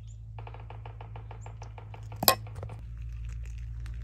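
A spoon clinking quickly against a pot or container, a run of small even clinks about eight a second, with one sharp louder clink partway through.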